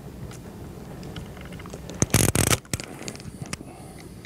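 A loud, raspy fart sound effect about two seconds in, lasting about half a second, over a low steady hum and faint clicks.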